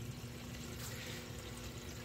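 Faint, steady sound of water running and trickling through a reef aquarium sump, with a low, steady hum from its pumps.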